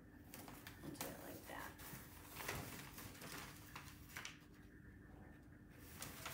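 Faint, scattered rustles and taps of brown kraft paper and painter's tape being pressed onto a metal file cabinet, over a low steady hum of room tone.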